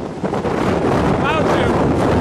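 Loud, steady rush of strong tornado wind buffeting the microphone close to a dust-filled tornado. A person gives one short, high shout a little after halfway.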